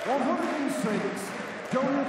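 A man's voice talking over the steady background noise of an arena crowd.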